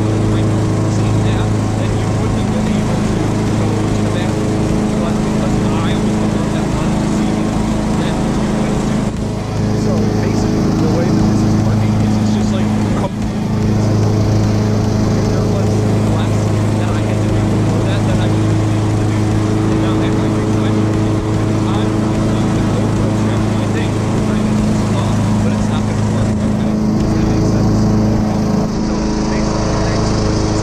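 Lawn mower engine running steadily throughout, loud enough to drown out a man talking over it.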